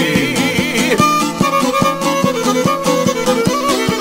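Traditional Balkan izvorna folk music: an instrumental passage with a high lead line that wavers in pitch, fading about a second in, over a steady beat of about two strokes a second.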